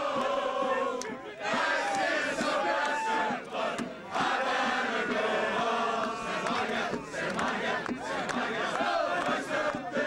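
A crowd of rugby supporters cheering, shouting and chanting together in celebration, many voices overlapping, with a couple of brief lulls.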